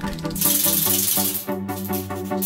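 Background music throughout, over which an aerosol spray can is shaken, its mixing ball rattling inside. A hiss rises from about half a second in and lasts about a second.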